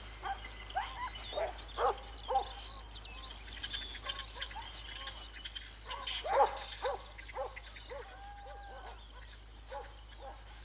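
A pack of hunting dogs barking and yelping, many short calls one after another, the loudest about six seconds in.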